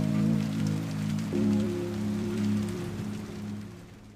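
Slow, sustained chords of a slowed-and-reverbed lofi song, changing chord about a second in, with a steady patter of added rain underneath. The music fades out near the end.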